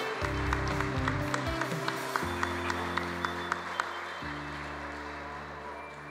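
Audience applause thinning out and fading away by about four seconds in, over background music of held chords that change about every two seconds.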